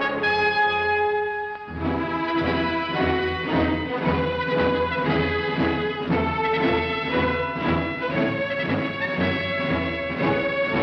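Orchestral film score with prominent brass. A held chord gives way, about two seconds in, to a march-like passage with a steady pulse in the bass.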